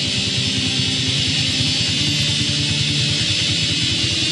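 Black metal: a dense, steady wall of heavily distorted electric guitars over rapid drumming, with no vocals.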